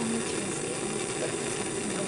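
Bunsen burner flame burning with a steady, even rushing noise of gas.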